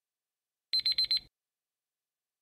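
Digital alarm beeping as a countdown timer runs out: four quick high-pitched beeps about a second in, over in about half a second.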